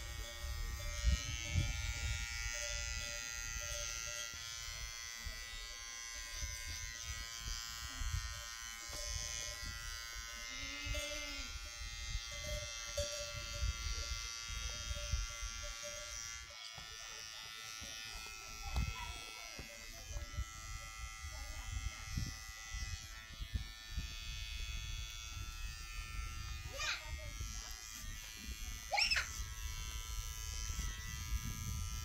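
A steady buzzing hum with an even, pitched drone that shifts slightly a little past halfway, with two short high squeals near the end.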